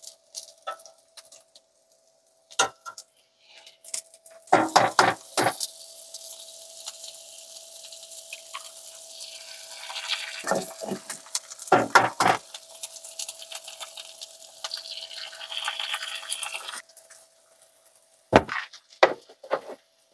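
Eggs knocked against a frying pan and cracked in: a few sharp knocks, about a third of the way through and again about halfway. They fry with a steady hiss in butter among sausage and onions. The hiss stops a few seconds before the end.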